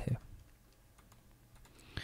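Faint, scattered clicking of a computer keyboard.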